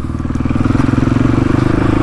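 Single-cylinder four-stroke engine of a 450 dirt bike running steadily at an even, low throttle, holding one pitch while the bike is ridden slowly.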